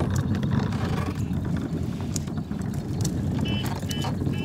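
Hard plastic wheels of a child's ride-on push car rolling over rough asphalt: a steady rattling rumble with scattered clicks. A few short, high chirps come in near the end.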